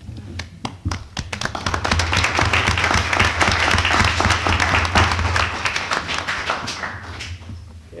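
Audience applauding: many hands clapping, swelling over the first couple of seconds, holding, then dying away near the end.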